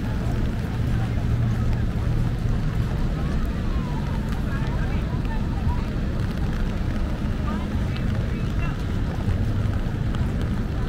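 Busy city street ambience: a steady low rumble of traffic with the indistinct chatter of a surrounding crowd.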